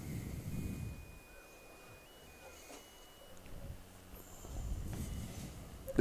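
Faint background of an outdoor high-school stadium heard through the broadcast microphone: a low rumble that swells about a second in and again near the end. A thin, high steady tone steps up and down in pitch a few times.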